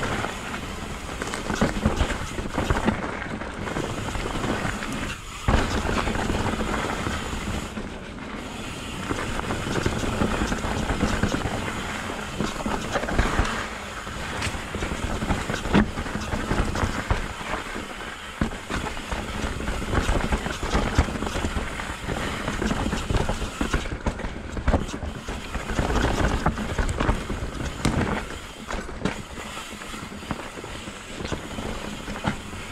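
Mountain bike riding fast down a dirt forest trail: tyres rolling and crunching over dirt and roots, with frequent sharp knocks and rattles from the bike over bumps, and rushing noise of air over the microphone.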